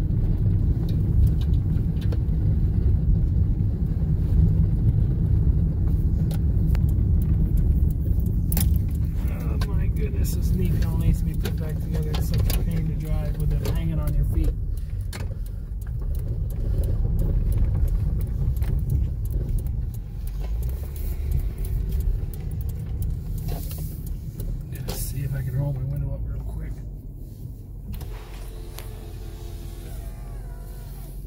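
Inside a Toyota Camry on the move: a steady low rumble of tyres and road noise, loudest in the first half and easing off toward the end, with keys jangling on the ring hanging from the ignition.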